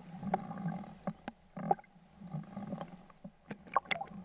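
Water sloshing and splashing around a waterproof action camera held at the surface, muffled, with irregular sharp clicks and small splashes.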